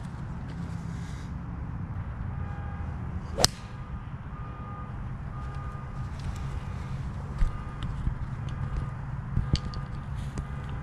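A golf club striking the ball on a tee shot about three and a half seconds in: one sharp crack over a steady low rumble, with a couple of smaller knocks later.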